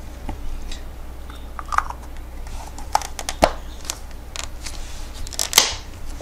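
Scattered small clicks and taps from a hand-held turn-signal light being handled and turned, over a low steady hum.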